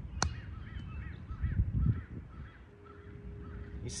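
A golf iron strikes the ball once on a short chip shot, a single crisp click just after the start. A bird then calls in the background, a string of short repeated calls about three a second, with a low rumble near the middle.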